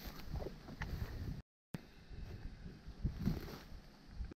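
Rustling through bracken and dry brush as someone walks through the cover, with wind rumbling on the microphone. The sound cuts out completely for a moment about a second and a half in.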